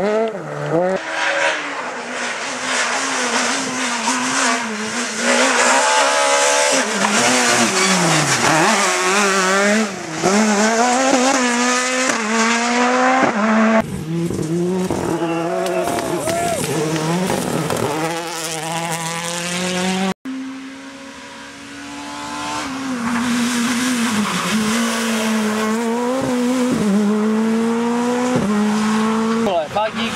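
Rally car engines revving hard on loose-surface stages, the revs climbing and dropping again and again through gear changes and lifts, in several short passes joined by abrupt cuts. The sound drops out sharply about twenty seconds in, then another car builds up.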